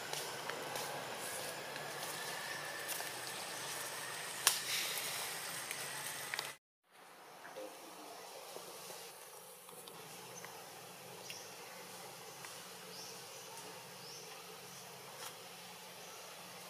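Forest ambience: a steady hiss of insects with a few faint clicks. The sound drops out for a moment about six and a half seconds in, then carries on quieter.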